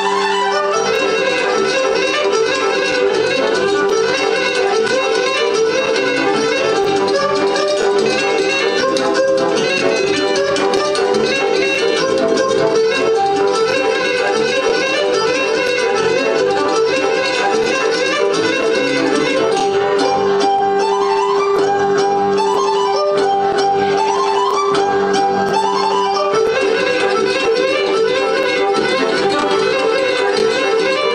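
Romanian folk dance music led by a fiddle, with a steady pulse and repeated quick rising runs in its second half.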